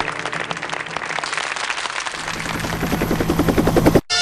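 Helicopter rotor beating in rapid, even pulses, growing louder toward the end and cutting off abruptly.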